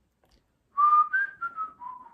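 A man whistling a short phrase of four notes, starting about three-quarters of a second in: the first note held, then a higher one, then two stepping down in pitch.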